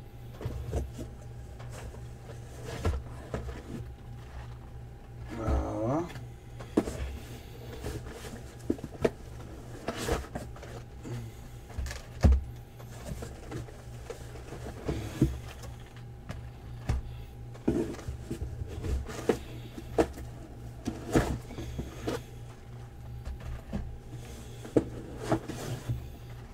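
Sealed cardboard hobby boxes being handled and set down in a stack: scattered knocks and bumps over a steady low hum.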